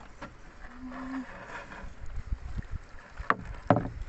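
A large catfish and a gill net being handled on the floor of a small boat: a low rumble throughout, with two sharp knocks about half a second apart near the end.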